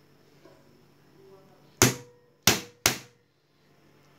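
Three sharp metallic strikes, the last two close together, each ringing briefly: a hand impact driver being hit to break loose the oil-pump screws on a Bajaj CT 100 engine crankcase.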